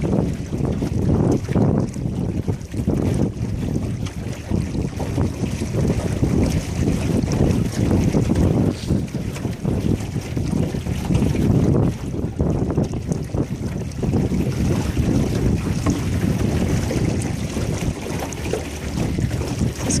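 Wind buffeting the microphone in an uneven, gusting rumble on a small aluminium boat under way, with water rushing along the hull.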